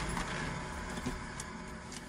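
Steady, even background noise with a few faint clicks, slowly fading.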